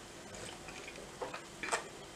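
A few short, soft sipping sounds as coffee is drunk from a mug, the loudest a little before the end.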